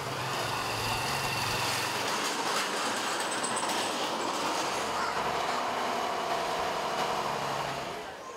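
Road traffic noise: a steady rush of passing vehicles with a low engine hum, dropping away at the very end.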